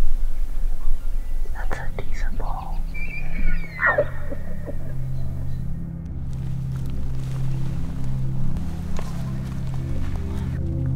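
A bull elk bugling: a high whistle about three seconds in that drops steeply in pitch near the four-second mark. It sounds over a steady low music drone that starts about two seconds in.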